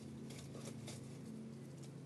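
Faint dry rustle of fingertips rubbing together to sprinkle tiny yarrow seeds, with a few soft ticks, over a steady low hum.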